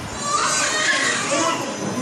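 Indistinct voices of several people talking over one another, some high-pitched.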